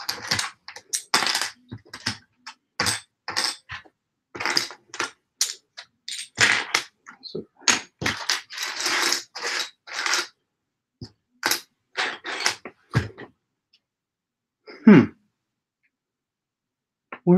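Loose LEGO plastic pieces clattering and clicking on a tabletop as they are sorted through by hand. It comes as a run of short rattles, with a longer rustling stretch in the middle. Near the end there is one short, low hum from a voice.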